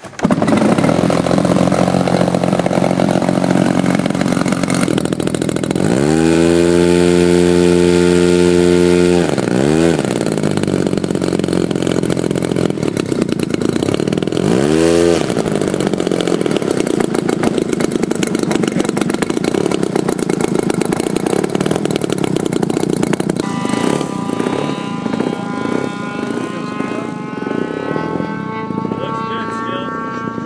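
Twin-cylinder 3W-150 two-stroke petrol engine of a giant-scale RC biplane running, catching suddenly at the start. It is revved up higher for about three seconds, about six seconds in, blipped briefly around fifteen seconds, then runs steadily. Its tone changes about 23 seconds in as the plane taxis.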